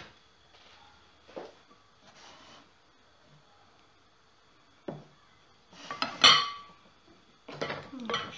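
Kitchen utensils knocking against a pan and a plate: a few light knocks, then a louder ringing clink about six seconds in.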